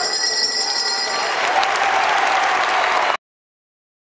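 A bell rings for about a second, marking the end of the round, over a large crowd. The crowd applause and cheering then swell, and the sound cuts off suddenly about three seconds in.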